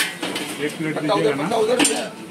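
Steel serving utensils clinking: a spoon and steel plates knocking against a steel pot of curry as kachori is served, with one sharp clink at the start and another near the end.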